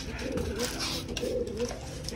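Domestic racing pigeons cooing, a run of several low, rolling coos one after another.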